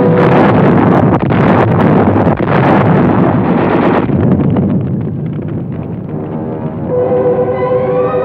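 Loud, dense battle-noise soundtrack: a rumble thick with rapid crackling, easing off after about four seconds into sparser crackle. Orchestral music with a held note comes in near the end.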